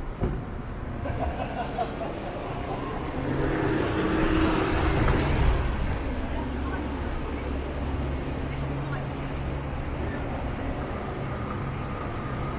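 Street traffic: a vehicle passes, its sound swelling up and fading again over a few seconds, over a steady low hum of engines.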